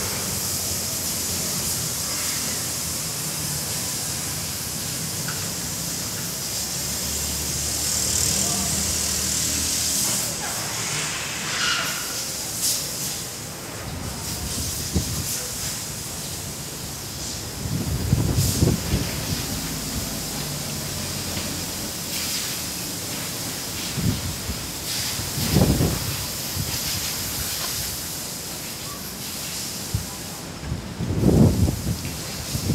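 Strong gusty wind: a steady hiss, with several low rumbling buffets of wind on the microphone in the second half.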